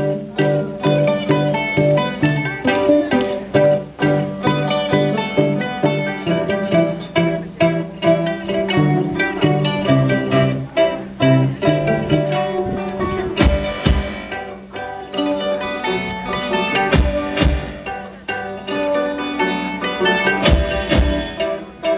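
Live folk band playing an up-tempo instrumental introduction on mandolin, acoustic guitar and fiddle over a repeating bass line. Low drum thumps come in about two-thirds of the way through.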